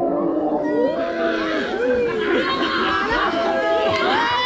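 Many children's voices shouting and calling out at once, a steady crowd of overlapping voices.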